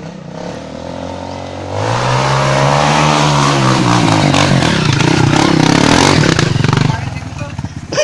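Dirt bike engine revving hard as it climbs a steep dirt trail, growing loud about two seconds in, its pitch rising and then falling, and easing off near the end as the bike tops the climb.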